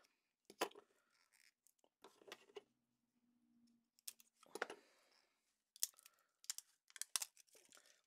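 Quiet, scattered clicks and scrapes of a scalpel blade working at the plastic lid of a Humbrol acrylic paint pot to pry it open, with the pot being handled.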